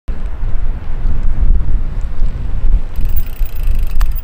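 Wind buffeting the microphone: a loud, uneven low rumble, with a faint higher hiss joining about three seconds in.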